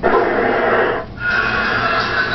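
Television sound through the set's speaker as a commercial ends: a loud, noisy burst that starts abruptly, breaks off for a moment about a second in, then resumes.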